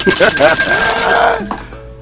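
A loud, alarm-like ringing made of several steady high tones. It starts suddenly and fades out after about a second and a half.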